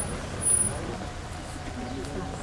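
Indistinct voices of people greeting one another, over a steady low background rumble, with a brief louder moment about half a second in.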